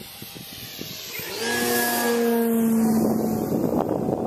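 Radio-controlled model jet flying past, a rushing engine noise with a steady hum that swells to a peak about two seconds in and then drops away. Wind buffets the microphone near the end.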